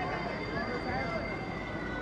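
Faint, distant voices over a steady background hum, with a thin steady high whine.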